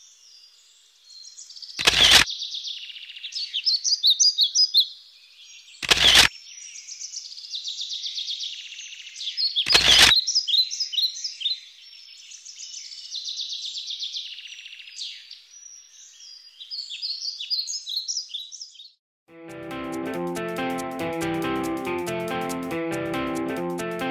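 Songbirds chirping and trilling in quick high-pitched phrases, cut by a loud sharp click about every four seconds. Near the end the birdsong stops and music with plucked strings begins.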